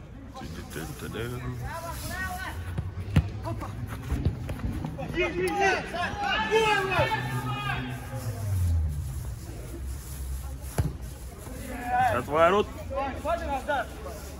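Footballers shouting to each other during play, with a few sharp kicks of the ball, the loudest about three seconds in.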